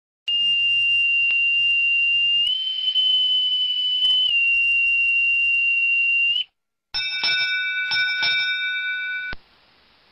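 Boatswain's pipe sounding one long, steady call that steps up in pitch and back down, ending with a short upward flick. Then a ship's bell is struck four times in two pairs, ding-ding, ding-ding: the bell signal that comes before a ship's quarterdeck announces an arrival.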